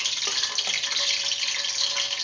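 Steady hiss from a pot heating on a stove, just before sliced onions go in.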